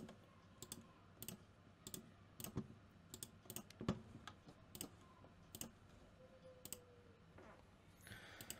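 Faint, irregular clicks of a computer mouse, about one or two a second, over near silence.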